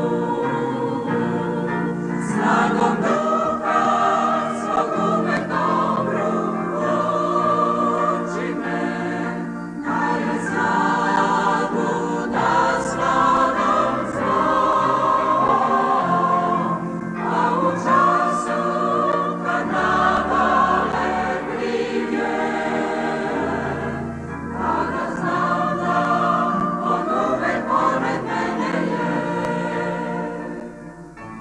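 Large mixed choir of men's and women's voices singing a Christian hymn in harmony, without a break.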